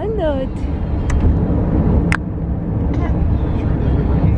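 Steady low road and engine rumble inside a moving car's cabin. A brief high-pitched, rising-and-falling voice sound opens it, and two sharp clicks come about one and two seconds in.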